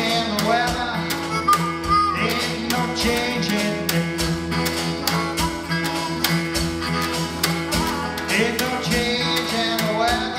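A live acoustic blues band playing: strummed acoustic guitar and harmonica over a steady percussion beat with a cymbal.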